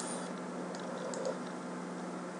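A few faint clicks of a computer mouse as interface entries are selected and ticked on, over a steady low hum.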